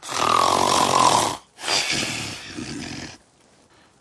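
A man snoring: two long snores, the first the louder, the second trailing off about three seconds in.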